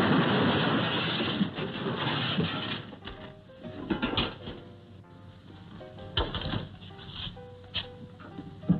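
Old film soundtrack: a loud crashing clatter as an open touring car collapses in a heap, lasting about three seconds. It then gives way to quieter music of short, light notes with a few scattered knocks.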